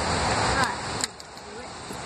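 Steady wind and rain noise on the microphone, with one sharp click about a second in as the car's rear door latch opens.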